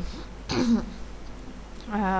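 A person briefly clearing their throat about half a second in; speech starts again near the end.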